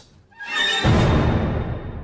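Music: one full orchestral chord with a deep low end and a few high held notes swells up about half a second in, then dies away slowly.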